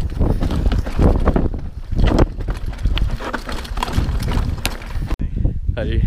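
Mountain bike clattering and rattling over a rocky trail, with rough wind noise on the camera microphone; it cuts off suddenly about five seconds in.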